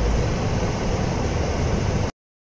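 Steady, even low rumbling background noise with no distinct events.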